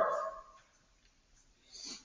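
A man's spoken word trailing off, then near silence, then a short soft intake of breath just before he speaks again.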